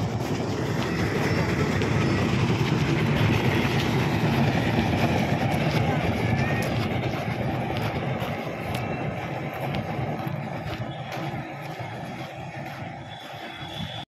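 Old car tyres dragged on ropes over a gravelly dirt ground, a continuous rough scraping rumble that fades over the last few seconds as the runners pull them away. Voices are faintly mixed in.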